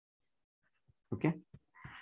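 Near silence for about a second, then a single spoken 'okay' from the lecturer, short and drawn out in pitch.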